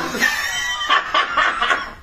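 A man laughing hard in a high-pitched cackle, breaking into a run of short repeated gasps of laughter in the second half.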